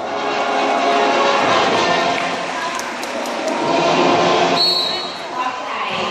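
A loudspeaker voice with show music, filling an open-air arena. A brief high steady tone sounds about four and a half seconds in.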